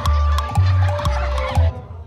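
Loud dance music with a heavy bass and a beat about two times a second, under sustained keyboard-like tones and a wavering melody line. The music cuts off near the end.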